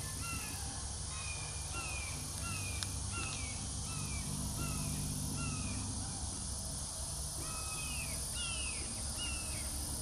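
A bird calling over and over, short downslurred notes about two a second, with a brief pause after the middle. Beneath the calls runs a steady low hum.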